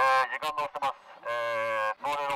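A man's voice shouting through a handheld megaphone, loud and nasal: a few short calls, then one long held call in the second half.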